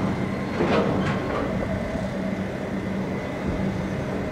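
Heavy diesel truck engine running steadily with a low, even rumble, with a couple of sharp knocks about a second in.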